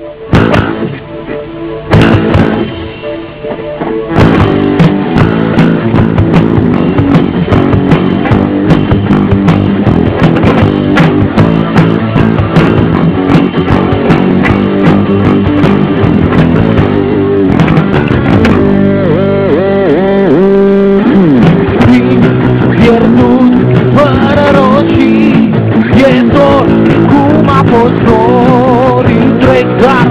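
Rock band with electric guitars and drums playing the opening of a song, building from quiet to full volume in the first few seconds. In the second half a melody line wavers and bends in pitch.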